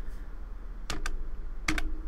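Computer keyboard keys being pressed to type a number: four sharp clicks in two quick pairs, about a second in and again near the end, over a steady low hum.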